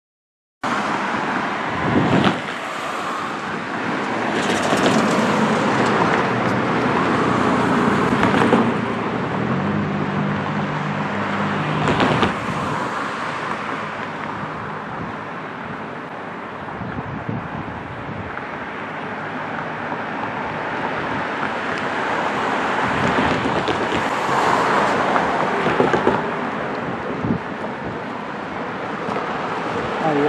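Outdoor street ambience: wind on the microphone and passing road traffic, rising and falling in several swells. A faint engine hum is heard for a few seconds in the middle. The sound cuts in about half a second in, after a brief silence.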